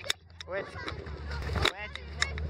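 A man's voice saying "wait, wait" over a low rumble of wind and handling noise on a handheld phone's microphone, with a few sharp knocks as the phone is moved. The rumble grows stronger in the second half.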